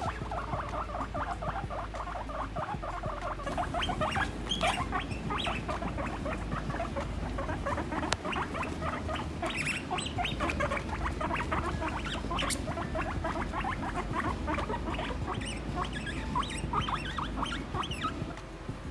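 Guinea pigs calling with a continuous run of short, rapid purring and rumbling sounds as they size each other up during bonding. In guinea pigs, such rumbling goes with dominance challenging.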